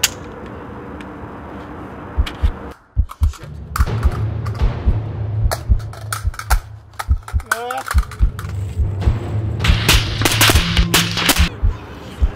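Gunfire: single shots and rapid bursts starting about two seconds in and growing densest near the end, over background music with a deep pulsing beat.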